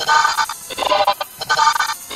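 Electronic, heavily processed music-like sound: pitched tones in short chopped phrases with brief gaps between them, about two to three a second.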